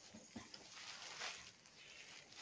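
Faint rustling of a folded silk brocade saree as hands turn back its folds, with a light tap about a third of a second in.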